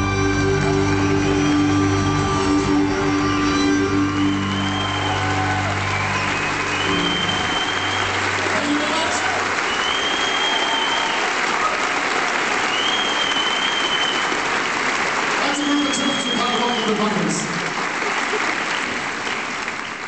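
A Celtic folk band of fiddle, accordion, piano and guitars ends a tune on a long held final chord, and a large concert-hall audience applauds and cheers, with repeated whistles, for the rest of the time.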